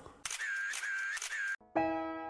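A whirring transition sound effect lasting about a second and a half, with a high tone that swoops down and back up three times. It cuts off, and piano music begins near the end.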